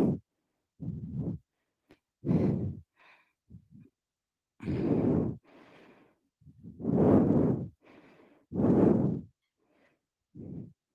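A woman breathing hard through a held plank: a run of loud, deep exhales about every two seconds, with quieter inhales between them.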